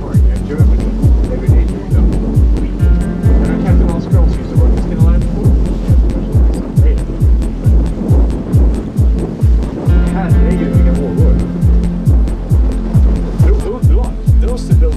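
Background music with a steady beat of about two strokes a second and held tones.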